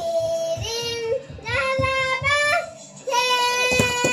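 Young child singing in long, steady held notes, three sung phrases with short breaths between them.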